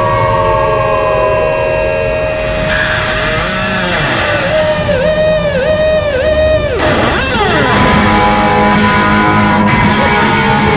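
Electric guitar music: long held, droning notes whose pitch dips and recovers about twice a second for a couple of seconds around the middle, then a quick downward slide into a new sustained note over a low rumble.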